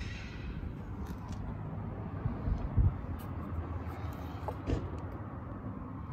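Steady low outdoor rumble with no engine running, broken by two soft thumps about three and five seconds in.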